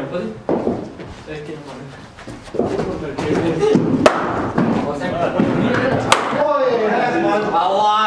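A cricket bat striking a hard leather cricket ball with a sharp crack about four seconds in, followed by a second sharp knock about two seconds later.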